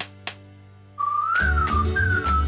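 Two sharp pops of bubble wrap being squeezed, then about a second in a whistled tune begins, gliding up and falling back, joined by a bass-heavy music jingle.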